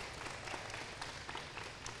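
Audience applauding steadily, a haze of many hands clapping.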